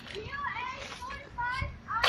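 Faint, high-pitched voices at a distance, over a quiet street background.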